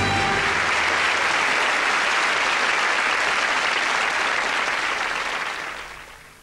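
Studio audience applauding steadily, fading out over the last second; the tail of the closing music dies away in the first half second.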